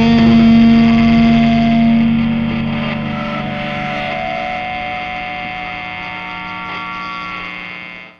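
Distorted electric guitar (a Fender Stratocaster) with a backing track, holding sustained closing chords that ring on and slowly fade, then cut off at the very end.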